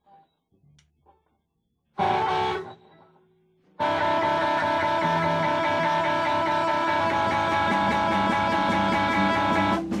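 Electric guitar with an effects unit: one chord struck about two seconds in and left to fade, then from about four seconds a steady chord strummed over and over. It stops abruptly just before the end.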